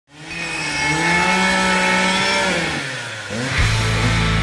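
An engine running at high revs, its pitch wavering and then sagging a little before three seconds in. A loud, deep, steady drone cuts in sharply about three and a half seconds in.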